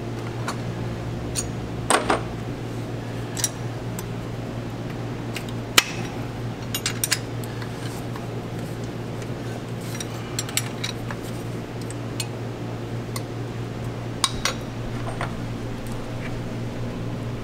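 Hand tools clicking and clinking against metal on a Paccar MX-13 engine's valve train as the rocker-arm adjusters are worked, in scattered irregular taps over a steady low hum.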